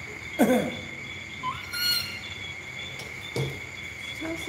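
Crickets chirping steadily in a high, even tone. A loud, short, falling voice-like call cuts in about half a second in, and a brief high squeak follows about two seconds in.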